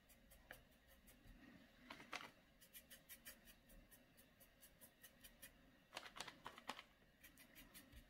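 Faint scratchy strokes of a flat paintbrush on textured canvas board, cross-hatching acrylic paint, coming in quick irregular runs.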